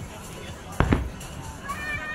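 Aerial fireworks bursting overhead: a sharp double bang about a second in, over steady background music and voices.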